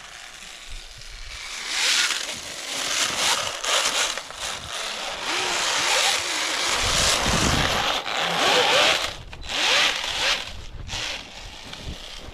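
RC snowmobile driving across snow: a rough, scraping noise that swells and fades and cuts out briefly twice near the end.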